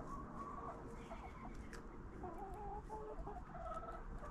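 Backyard chickens clucking, a string of short calls one after another, with a few faint clicks among them.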